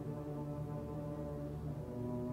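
String orchestra holding slow, sustained chords in the low and middle register, changing to a new chord near the end.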